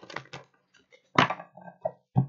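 Tarot cards being handled and laid down: a series of short card slaps and rustles, the loudest about a second in.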